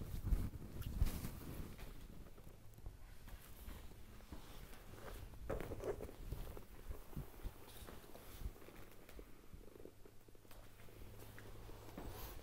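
Faint rustling and low rumbling of clothing and body movement as a leg is handled and set down on a treatment couch, with a few soft knocks near the start and more shuffling about halfway through, over a steady low hum.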